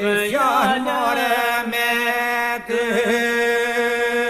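Men singing an Albanian iso-polyphonic folk song from Kërçova: a lead voice bends and ornaments the melody over a steady drone (iso) held by the others. The singing dips briefly about two-thirds of the way through.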